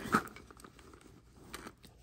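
A brief click just after the start, then faint rustling and small clicks of a hand rummaging inside a leather handbag's zippered inner pocket and drawing out a cloth eyeglass wipe.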